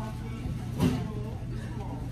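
Restaurant dining-room background: a steady low hum with faint voices, and one brief loud sound just under a second in.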